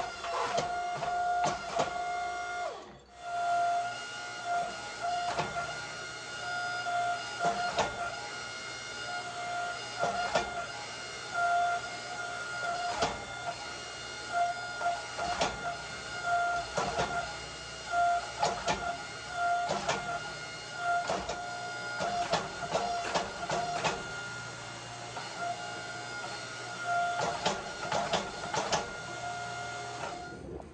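Power hammer running with a steady hum, its dies striking hot H13 tool steel in irregular blows as the billet is planished and drawn out.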